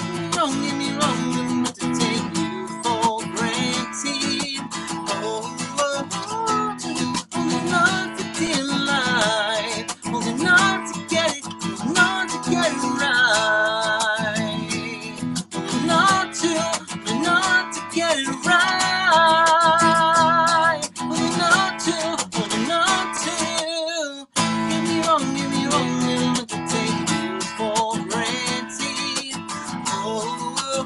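A man singing with vibrato over a strummed acoustic guitar; the song breaks off for a moment about 24 seconds in, then picks up again.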